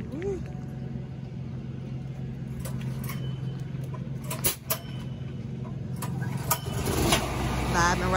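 An engine running steadily with a low hum that grows louder near the end, with a few sharp clicks and taps in the middle.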